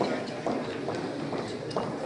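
Indistinct voices echoing in a large gymnasium, with a few sharp knocks about half a second, a second and a half, and near the end.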